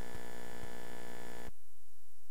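Steady electrical buzz with a few faint clicks, which cuts off abruptly about one and a half seconds in, leaving only faint hiss.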